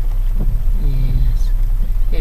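Steady low rumble of an idling vehicle engine, heard from inside the vehicle, with a short low pitched sound about a second in.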